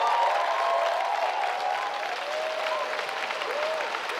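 Studio audience applauding, with voices calling out in the crowd. It is loudest at the start and eases off slightly.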